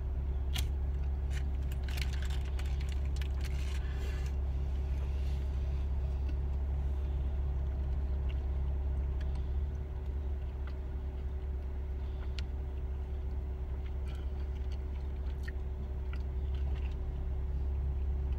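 A man chewing a mouthful of Burger King Whopperito, a Whopper wrapped in a flour tortilla, with a burst of crinkly rustling about two to four seconds in and small clicks of eating after it. Under it runs the steady low hum of a car cabin.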